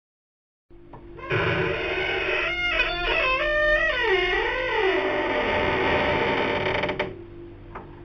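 A horror sound effect: a sinister laugh that wavers and slides down in pitch over a dense drone, cutting off sharply about seven seconds in.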